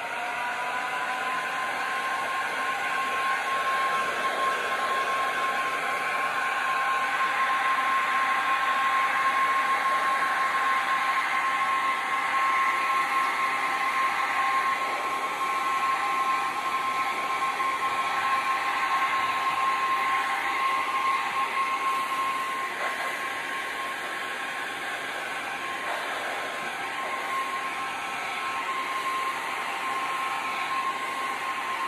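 Electric heat gun running steadily, blowing hot air over wet epoxy resin: a constant high whine over rushing air.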